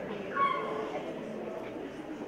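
Low murmur of an audience in a hall, with one brief high-pitched squeal about half a second in.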